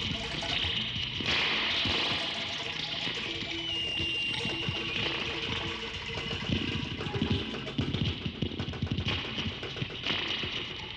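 Experimental electronic film soundtrack: a dense hissing, crackling noise texture. A surge comes in about a second in, and a brief high whistle-like tone sounds for about a second and a half near the middle.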